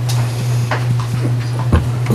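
Steady low hum on the meeting room's sound feed, with a few light clicks and one short knock about three-quarters of the way through.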